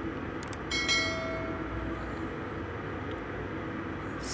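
Steady hum of a metro station, with one bright bell-like chime about a second in that rings on and fades away within about a second.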